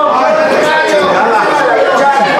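Several people's voices talking and calling out over one another, loud and continuous: the spectators and people around the ring.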